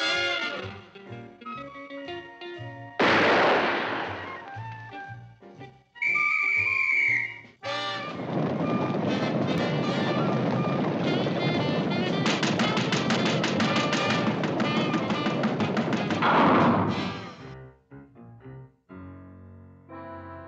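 Cartoon soundtrack: a brass music cue, then sound effects. A sudden noisy burst comes about three seconds in and a short whistle-like tone around six seconds. From about eight seconds to seventeen seconds there is a long, dense, rapid clatter, the stampede of a charging cartoon squad.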